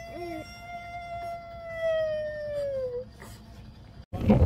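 A toddler's long, high, howl-like vocal 'aaah', held about three seconds on one pitch and sagging at the end, with a brief lower note just after it starts.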